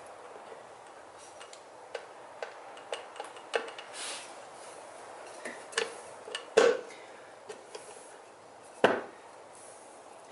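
Scattered light metallic clicks and knocks, with two sharper knocks past the middle and near the end, as the right-side engine cover of a Honda CRF450R is worked by hand onto its gasket and dowels and pushed into place.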